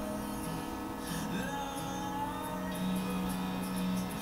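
Background music with long held low notes, playing from a television.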